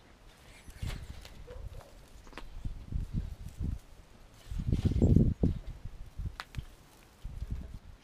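Handling noise from spruce and pine branches being pushed into a wire hanging-basket frame: irregular low thumps and rustles with a few light snaps. The loudest low rumble comes about five seconds in.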